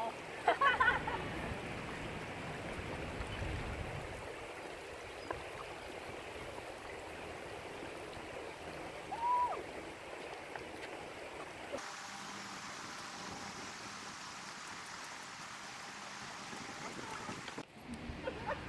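River water flowing steadily beneath a footbridge, an even rushing noise.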